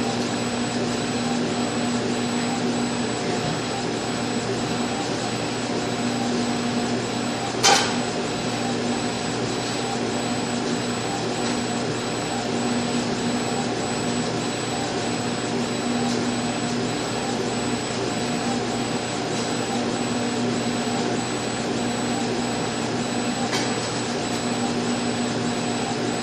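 Laser engraver running during an engraving pass on metal plates: a steady machine whir with a constant hum, and one sharp click about eight seconds in.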